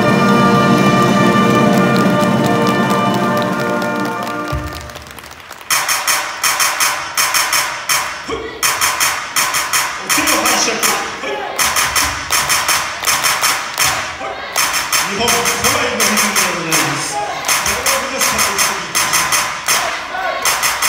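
A school wind band's closing chord of brass and saxophones, held and fading out over about four seconds. Then a steady beat of sharp strokes, about two a second, with a man's amplified voice speaking over it.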